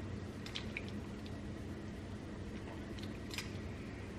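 Iced coffee sipped through a metal straw, with a few faint slurps and clicks, over a quiet, steady low hum.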